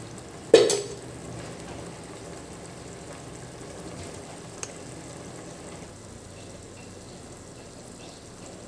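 Green peas in green masala paste sizzling steadily in a pot on a gas burner, with one sharp metal clank about half a second in.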